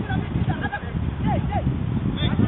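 Distant shouted calls from players on a football pitch, short separate cries, over a steady low rumbling background noise.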